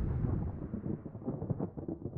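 Low, noisy whoosh of a logo-intro sound effect fading away, with a few faint clicks as it dies down.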